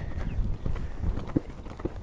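Hoofbeats of a horse loping on a sandy arena surface: a quick, irregular run of dull thuds.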